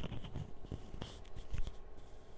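Clip-on lavalier microphone being handled and fastened to a dress: scratchy rubbing with several sharp knocks.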